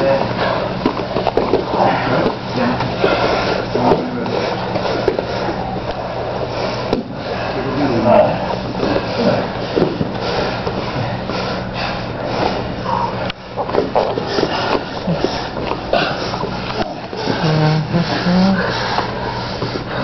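Indistinct voices in a small training room over a steady low hum, with scuffling and rustling as two grapplers roll on the mats.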